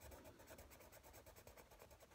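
Faint scratching of a Prismacolor coloured pencil on the paper of a colouring book, in quick, even back-and-forth strokes, the pencil pressed hard to lay down solid colour.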